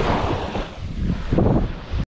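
Wind buffeting the microphone in gusts, over the steady wash of small waves breaking on the beach.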